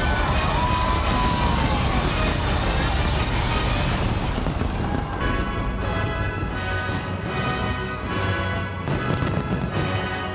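Dense crackling and booming of a large fireworks display, with a couple of gliding whistles in the first two seconds. From about four seconds in, music with sustained chords comes to the fore, with a few sharp bangs near the end.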